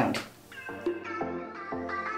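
Electronic intro music starting about half a second in: a run of stepped synth notes, with a rising sweep beginning near the end.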